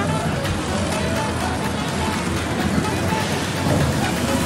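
Small electric slot cars running round a track, a steady whir under background music and the noise of a busy room.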